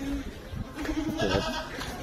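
A goat bleating in the background: one call starting a little before a second in and lasting about a second.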